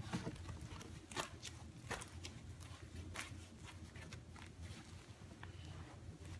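Faint scuffing and brushing of hands folding a shag carpet edge under and pressing it flat against the floor, in a few soft strokes about a second apart.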